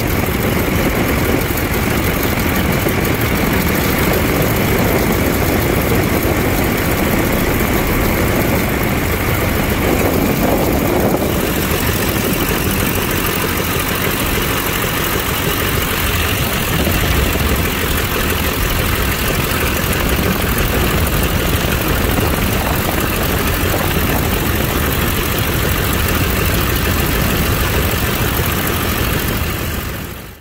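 Seven-cylinder Continental W-670 radial engine of a Waco UPF-7 biplane running at low power on the ground, heard from the open cockpit with the propeller turning. The noise is steady and dense, changes its character about a third of the way in, and fades out at the end.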